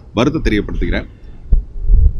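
A man speaking a short phrase, then a pause broken by a low thump about one and a half seconds in.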